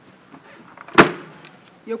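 The lid of a Fan Milk ice cream bicycle cart's insulated plastic cold box slammed shut once, a single sharp bang about a second in.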